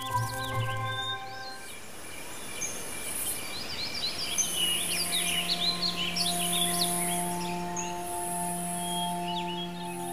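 Forest ambience: many small birds chirping in quick rising and falling calls over a steady background hiss, with soft sustained music chords held underneath, one fading out and another coming in partway through.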